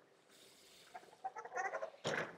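Sliding lecture-hall blackboard panels being moved on their tracks, giving a short run of faint, wavering squeaks in the second half.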